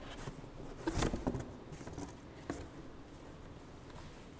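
Cardboard box flaps being pulled open and handled: scraping and rustling of cardboard, busiest about a second in, with another sharp knock at about two and a half seconds.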